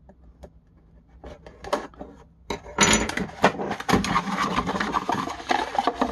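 A cardboard box being opened by hand. First come a few light clicks and scrapes as a blade cuts the packing tape. From about three seconds in there is dense, continuous rustling and scraping of cardboard flaps and inserts being pulled out, with small knocks of plastic parts.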